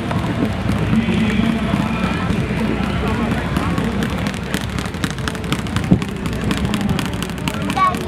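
A person laughing briefly at the start, then steady low outdoor background noise with faint music in it.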